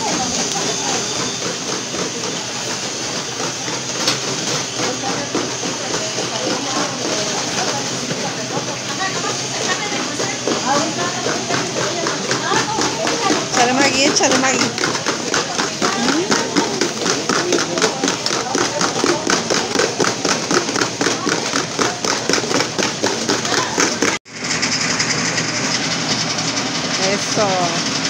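Several people talking over the steady running of an electric grinding mill that is grinding peanuts and other mole ingredients. The whole sound drops out for an instant about 24 seconds in.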